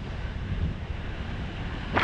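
Inner tube sliding down a water slide: water rushing under the tube with wind buffeting the microphone, a steady low rumble. Right at the end a sudden loud rush of water begins as the tube runs into the splash pool.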